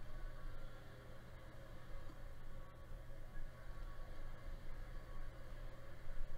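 Room tone: a steady low hum with a faint hiss, and no distinct events.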